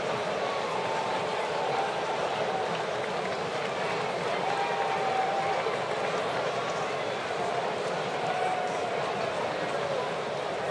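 Steady crowd noise from a baseball stadium's stands: a constant din of many voices, with a few single voices calling out above it.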